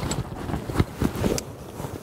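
Wind buffeting the microphone, with a few sharp clicks of climbing gear as a carabiner and rope are handled.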